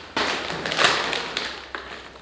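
Crinkling of a plastic chip bag being handled, opening with a sharp tap and loudest about halfway through before fading.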